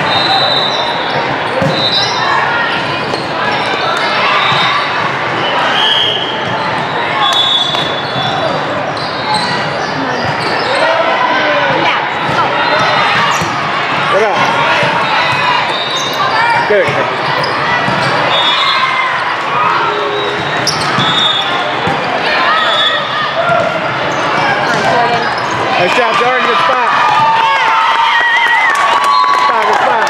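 Indoor volleyball play echoing in a large hall: many voices overlapping from players and spectators, ball hits and short high squeaks from the court recurring every second or two.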